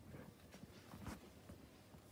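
Near silence: room tone with a few faint, light ticks.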